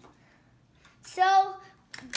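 A child's short vocal sound about a second in: one held, level-pitched note lasting about half a second, with near silence around it.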